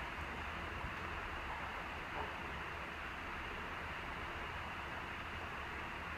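Steady, even hiss with a faint low hum beneath it: the room tone and noise floor of a voiceover recording, with nothing else happening.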